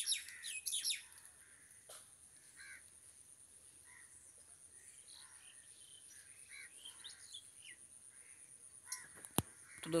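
Birds chirping in the background: a quick run of short descending chirps, about five a second, in the first second, then fainter scattered calls. There is a single click near the end.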